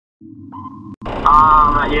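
A short steady beep over a low hum, then a click about a second in, and a person starts talking.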